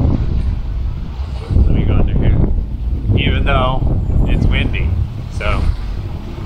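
Strong wind buffeting the camera's microphone: a loud, uneven low rumble, with short bits of a man's speech in between.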